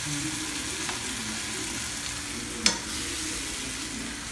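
Onions, peppers and meat sizzling steadily in a nonstick frying pan on a gas stove as a fork stirs them. One sharp clink of the fork against the pan about two-thirds of the way through.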